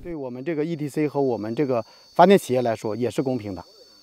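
A man speaking, with a steady high-pitched drone of insects behind the voice.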